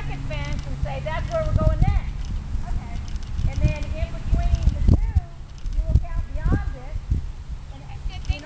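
A horse's hooves thudding dully on sand arena footing as it lands a small jump and trots on, with a person talking over it.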